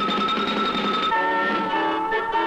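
Station-identification theme music: a held high tone over rapid repeated strumming, changing about a second in to a sustained chord of several notes.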